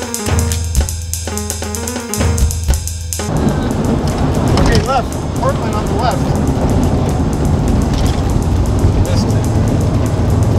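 Music with a steady drum-kit beat that cuts off about three seconds in, giving way to steady road and tyre noise inside a car driving on a wet road, with a few brief voice-like sounds soon after the change.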